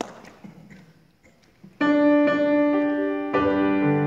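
Grand piano starting a slow introduction about two seconds in, after a quiet stretch of faint room noise: one sustained chord, then another about a second and a half later.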